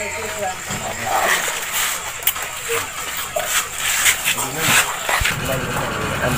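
Irregular sharp knocks and thuds of durians being handled and set down in a truck's wooden cargo box, with voices around.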